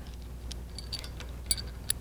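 Light metallic clicks and clinks of a steel shackle and chain termination being handled, about five small ticks, the sharpest about one and a half seconds in and just before the end.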